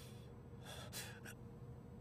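A man's faint, tense breathing, with a couple of short sharp breaths about halfway through.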